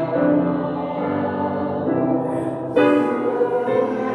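Grand piano playing slow, sustained chords with voices singing along. A louder new chord is struck about three seconds in.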